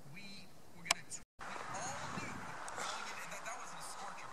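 Tivoli Audio Model One table radio playing a talk station, heard faintly from a distance across a yard. There is a sharp click just under a second in, then a brief dropout where the recording cuts, after which the talk is a little louder.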